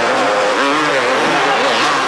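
Several two-stroke motocross bikes on a supercross track, their engines revving up and down and overlapping, over a steady wash of stadium crowd noise.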